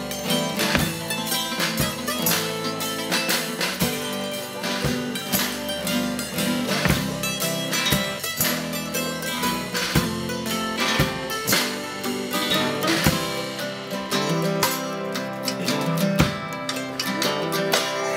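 Acoustic string band playing an instrumental passage: two acoustic guitars and a mandolin strumming over upright bass, with a small drum kit keeping a steady beat.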